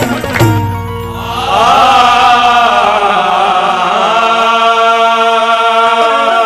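Qawwali music: a couple of drum strikes in the first half second, then voices sing a long, gliding held note over harmonium.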